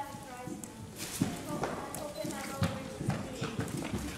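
Children's voices from a stage in a large hall, with short hollow knocks of footsteps on the stage scattered through.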